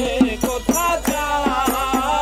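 A man singing a Bengali devotional folk song in long, wavering melismatic lines, entering about half a second in, over a plucked skin-bellied lute and a steady percussive beat of about four strikes a second.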